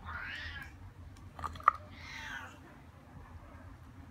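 A cat meowing twice, the calls about two seconds apart, with a sharp knock between them that is the loudest sound.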